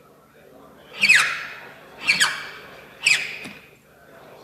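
A hand file drawn across a brass key blank held in a vise: three rasping strokes about a second apart, each with a squeal that falls in pitch.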